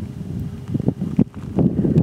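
Wind buffeting a camera microphone: an uneven low rumble, with a few short knocks over it.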